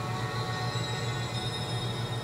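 A steady low hum with faint steady higher tones, unchanging throughout.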